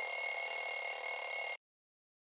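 Alarm clock bell ringing steadily, then cutting off suddenly about a second and a half in.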